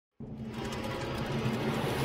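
A synthesized riser sound effect for an animated logo intro: a noisy swell with a low hum beneath it that starts suddenly and grows steadily louder.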